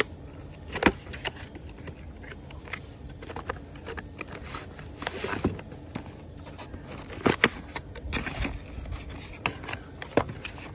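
Cardboard box being opened and unpacked by hand: the flaps and inner cardboard tray scraping and rustling, with irregular sharp knocks and clicks. The loudest knocks come about a second in and again about seven seconds in.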